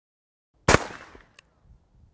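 A single shot from a Smith & Wesson Model 610 revolver firing a 10mm Auto round, under a second in, loud and sharp with a short trailing echo.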